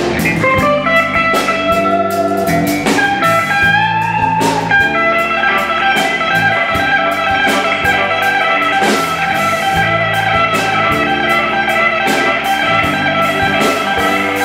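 A blues band playing live without vocals: electric guitars, electric bass and drum kit. The lead guitar bends a note upward about four seconds in, then plays quick repeated high notes over the bass line and drums.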